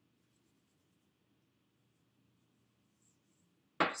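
Near silence: room tone, with faint hand-rubbing at most, until a woman starts speaking just before the end.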